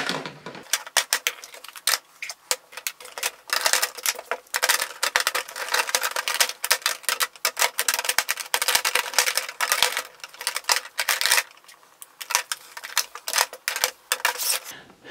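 Makeup compacts and cases clicking and clacking against one another and against a clear acrylic storage box as they are packed upright in rows. A quick run of small hard clicks that thins out near the end.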